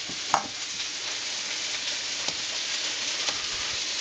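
Onions frying in hot oil in a pan, a steady sizzle, with one short knock about a third of a second in.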